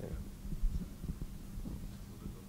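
Irregular low thumps of handling noise from a handheld microphone, over a steady low electrical hum in the sound system.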